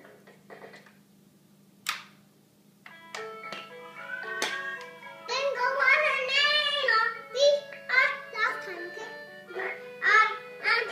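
Orange cat-shaped toy keyboard: a click about two seconds in, then electronic notes start about a second later, and from about five seconds a little girl's voice sings into the toy's microphone along with the tune, wavering in pitch.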